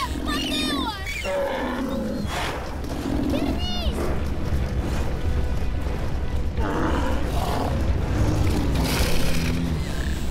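Film sound effects of dinosaur calls over background music: squealing cries that rise and fall in pitch, one right at the start and another about four seconds in, with rougher roar-like calls later.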